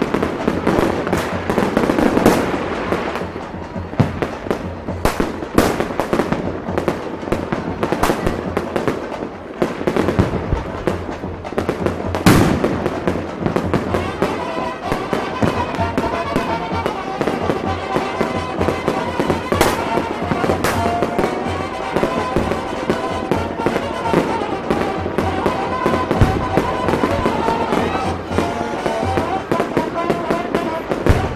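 Aerial fireworks bursting: repeated sharp bangs at irregular intervals, the loudest about twelve seconds in, over music and crowd voices.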